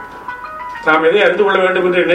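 A man singing a verse unaccompanied, on long held notes that bend slowly. He comes in about a second in, after a faint steady tone.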